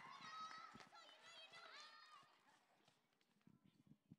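Near silence: faint, distant voices in the first two seconds, then a few faint clicks near the end.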